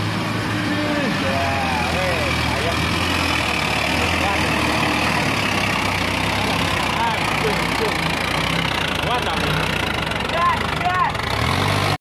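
Diesel engine of a heavily loaded dump truck running hard and steady as it hauls up a steep dirt slope, the engine labouring under the load. Voices call out intermittently over it.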